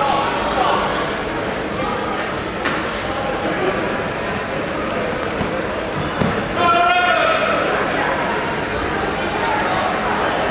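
Indistinct voices of coaches and spectators calling out, echoing in a large sports hall. A few thumps are mixed in, and one voice calls out louder about two-thirds of the way through.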